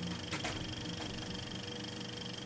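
A steady low hum made of several level tones, with a faint high whine above it and a single click about half a second in.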